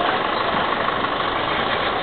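Steady, even background noise with a low rumble and no distinct events, of the kind left by nearby idling traffic or engines.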